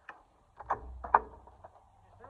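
Skateboard knocking and clattering onto concrete as a trick is bailed: a few sharp knocks, the loudest just over a second in, over a low rumble.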